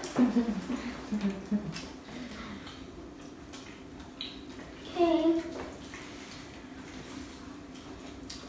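Quiet eating of crispy fried chicken: faint crunches and chewing over room tone. A low murmured voice trails off in the first two seconds, and a brief hummed "mm" comes about five seconds in.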